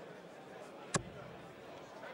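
A single steel-tip dart thudding into a bristle dartboard, one short sharp hit about a second in.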